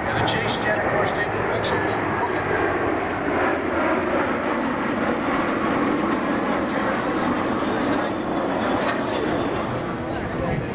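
Jet engine noise from a formation of a MiG-29UB, L-39s and Alpha Jets flying past overhead: a steady, loud rushing sound that holds through the whole pass.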